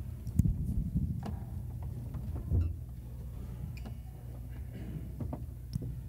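Congregation stirring in a church hall after a hymn number is called: scattered knocks and rustles, with one heavier thump about halfway through, over a steady low room hum.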